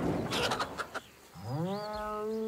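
A cow's moo begins about a second and a half in, rising in pitch and then held. Before it, the last of a loud thud dies away with a few clicks.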